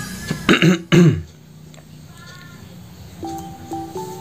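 Two loud, short cough-like bursts of a man's voice about half a second apart, the second dropping sharply in pitch, over background music with a steady beat.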